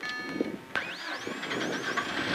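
Peugeot 206 XS Group A rally car's engine heard from inside the cabin while the car is stopped: about three quarters of a second in it revs up in a rising whine, then rises and falls in short blips as the car gets going again.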